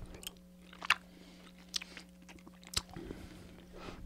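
Someone chewing soft fruit taffy close to a microphone: a few faint, spread-out mouth clicks and smacks over a low steady hum.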